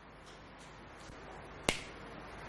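A single sharp click near the end, over faint room tone.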